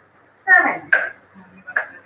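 A woman clearing her throat, starting about half a second in, with a shorter vocal sound near the end.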